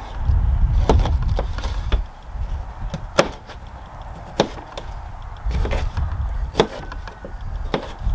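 Knife cutting vegetables on a table: a handful of separate sharp knocks of the blade, irregularly spaced, over a low rumble that comes and goes.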